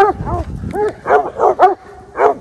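Hounds barking excitedly in a rapid series of short barks, about three a second, at a coyote they have cornered in the snow.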